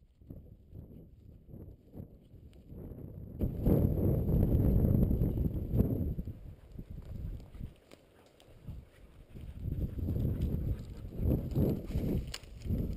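Footsteps through dry grass and brush with wind buffeting the microphone, the rumble swelling loud from about three and a half seconds in and again near the end.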